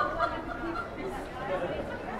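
Several people's voices chattering, indistinct, over general street noise.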